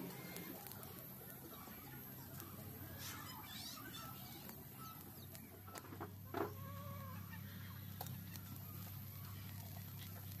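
Faint clucking of chickens over a low steady hum, with a few light clicks. The loudest moment is one short, sharp sound a little over six seconds in.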